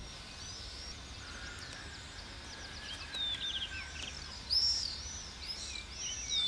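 Small birds chirping and calling in short, high, curving notes and quick trills, loudest about four and a half seconds in, over a low steady outdoor rumble.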